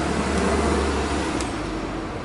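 Street traffic noise with the low engine rumble of a passing vehicle, which fades out about one and a half seconds in.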